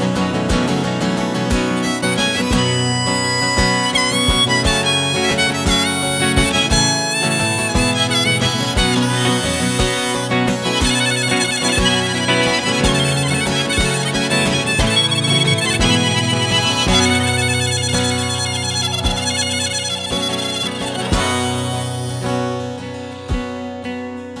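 Instrumental break of a folk ballad played live on strummed acoustic guitar and electric guitar, carried by a sustained, bending lead melody line.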